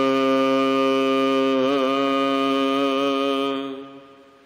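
A man's voice chanting Gurbani in the Hukamnama recitation, holding one long drawn-out note at the end of a line with a slight waver about halfway through, then fading away near the end.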